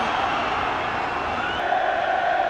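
Steady noise of a large football stadium crowd, with a held, higher note coming in about halfway through.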